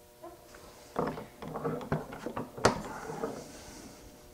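Chisel work on a wooden dovetail joint at the bench: a run of irregular wooden knocks and scraping, with one sharp, loud knock nearly three seconds in.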